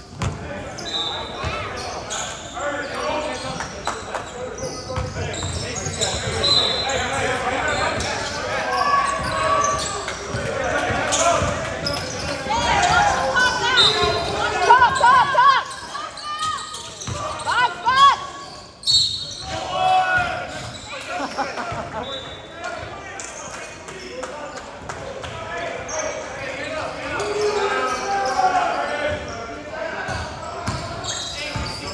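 A basketball being dribbled and bouncing on a hardwood gym floor during a game, with players and spectators calling out, all echoing in a large hall.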